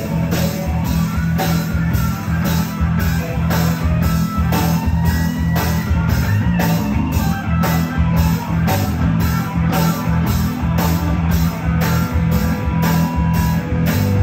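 Live rock band playing an instrumental passage: electric guitar and bass guitar over a steady drum-kit beat.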